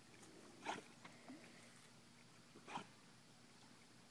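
Near silence, broken twice by a faint, short sound from a dog, about two seconds apart.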